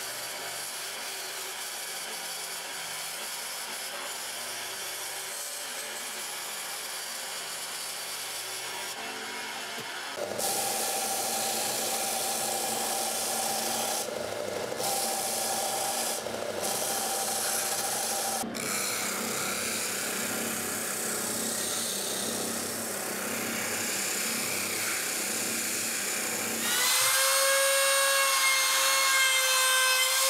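A band saw cutting MDF runs steadily, then about ten seconds in a benchtop belt sander takes over, sanding the curved edge of an MDF ring with a couple of brief pauses. Near the end a handheld router starts, a steady high whine and the loudest part, as it trims a curved MDF arch.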